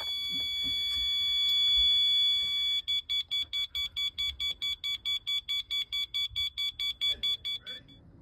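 Electronic warning tone of a Mathers MicroCommander engine-control system: a high-pitched steady beep for about three seconds, then fast pulsing beeps, about five a second, that stop just before the end.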